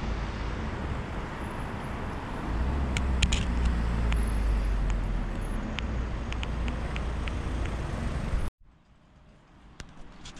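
Steady road traffic noise, swelling with a deep rumble as a vehicle passes in the middle. It cuts off abruptly about eight and a half seconds in, leaving a much quieter background.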